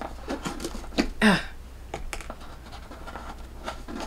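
Fingers scratching, scraping and tapping at a tight pink cardboard gift box while prising a small perfume spray out of its insert: a run of irregular short clicks and scrapes.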